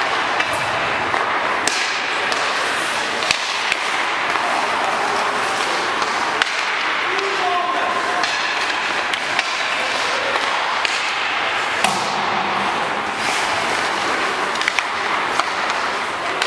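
Ice hockey practice in an indoor arena: skates scraping the ice in a steady hiss, with sharp clacks and knocks of pucks on sticks and boards scattered throughout, and distant players' voices.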